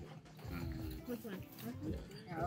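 Voices talking faintly in the background over music.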